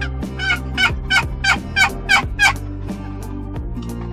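Eastern wild turkey calling: a run of about seven sharp notes, each dropping in pitch, about three a second, that stops after two and a half seconds.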